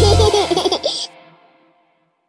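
A cartoon baby laughing in a quick run of short giggles as the song's closing music cuts off. The giggles stop about a second in and everything has faded by about halfway.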